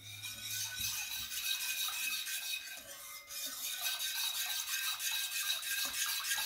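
Wire whisk beating a thin liquid of milk, water, oil, sugar and yeast in a bowl: a fast, steady swishing and scraping of the wires against the bowl.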